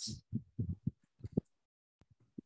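Soft, low, muffled taps of a computer keyboard and mouse in use, about eight in quick succession in the first second and a half.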